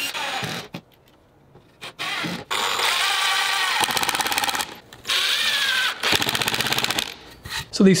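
Cordless impact driver driving screws through plywood into the sides of a box, in several short bursts of rapid hammering with pauses between them.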